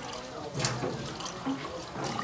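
Tap water running in a thin stream into an emptied sardine tin held under the faucet over a stainless steel sink, rinsing out the leftover sauce. A short sharp knock sounds a little over half a second in.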